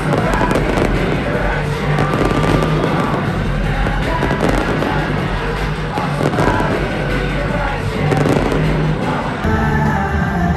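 Loud live pop concert music with sharp crackling bangs over it, like stage pyrotechnics going off. The sound changes abruptly near the end.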